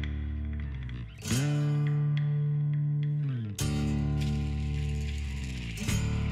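Title music of sustained chords that change twice, each change entered with a sliding pitch bend.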